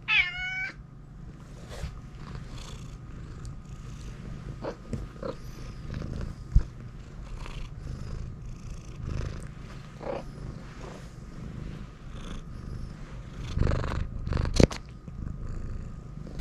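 Domestic cat giving one short meow that falls in pitch, then purring steadily close up, with a couple of sharp knocks along the way.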